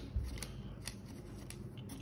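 A few faint, short clicks and light taps as a hand handles the small plastic parts and paper wrapper of a COVID-19 rapid antigen test kit on a tabletop.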